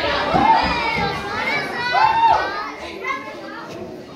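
Young children's voices chattering and calling out over one another, high-pitched, dying down near the end.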